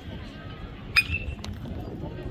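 A metal baseball bat striking a pitched ball about a second in: one sharp ping with a brief ring.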